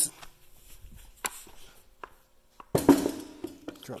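A 90-pound PowerBlock adjustable dumbbell set down onto a wooden-topped metal stand: one heavy thud with a brief rattle about three seconds in, after faint handling noise and a single click.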